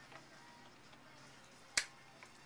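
A single sharp snip of hand clippers cutting through a balsam branch tip, near the end; otherwise a quiet room with a faint hum.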